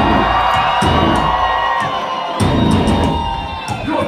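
Heavy metal band playing live through a venue PA: distorted guitars hold long, bending notes over heavy, chugging low-end hits from bass and drums.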